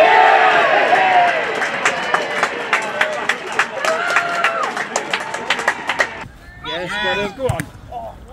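Small football crowd cheering and clapping just after a goal, loudest at the start and slowly dying down, with shouts over many scattered claps. About six seconds in it changes abruptly to a few close voices talking and calling out.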